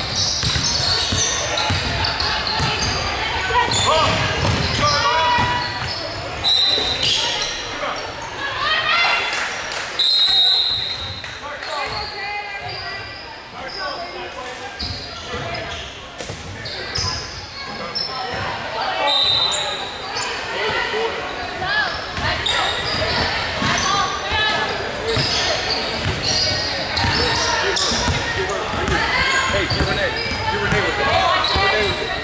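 Indoor basketball game on a hardwood court: the ball bouncing as players dribble, a few short high sneaker squeaks, and players' voices and calls, all echoing in a large gym.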